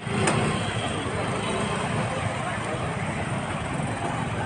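Busy street ambience: a motor vehicle engine running close by, with voices mixed in.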